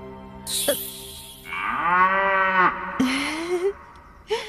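Background music fades out, then a long comic cow moo, a sound effect for the plush cow doll, swelling and falling over about a second. A short rising call follows just after.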